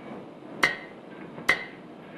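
Two sharp clicks about a second apart, with a short ring after each, keeping time as a count-in just before a guitar rhythm pattern is played.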